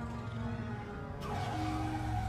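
Film soundtrack: the engine of a flying motorcycle running as it comes in to land, with a rushing noise coming in about a second in and orchestral score underneath.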